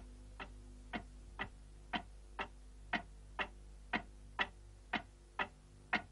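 Steady ticking, about two even ticks a second, over a faint steady hum.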